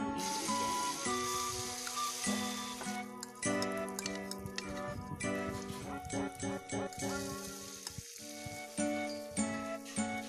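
Egg, flour and malunggay batter sizzling as it is poured into hot oil in a pan, the sizzle strongest in the first few seconds and again in the second half. Background music with chiming, bell-like tones plays over it.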